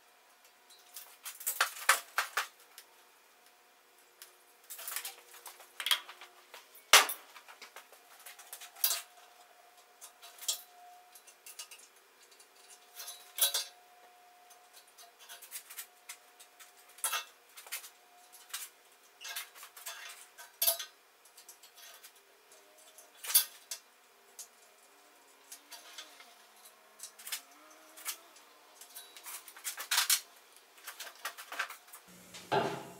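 Scattered light metal clinks and taps as steel tools, a tape measure among them, are handled against a square-tube steel workbench frame while its legs are measured and marked for cutting. One knock about seven seconds in is the loudest.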